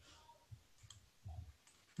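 Near silence with a few faint clicks and soft knocks from a computer mouse being used to scroll a page on screen.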